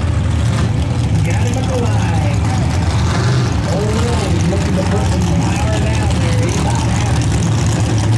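A heavy engine idling steadily with a low, constant rumble, with faint voices talking over it.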